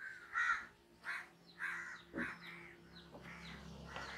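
Crows cawing faintly in the background: a string of short, hoarse caws about one every half second.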